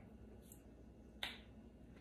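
Near silence in a room, broken once, a little over a second in, by a single short sharp click.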